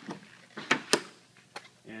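Tesla mobile charging connector being unplugged from a Model S charge port: a few sharp plastic clicks, the loudest two about a quarter second apart near the middle and a lighter one a little later.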